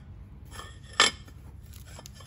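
Stacked dinner plates knocking together as they are handled on a shelf: a few light knocks, then one sharp clack about a second in.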